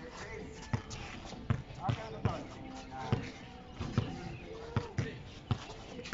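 A basketball being dribbled on an outdoor hard court, bouncing in a steady rhythm about every three quarters of a second.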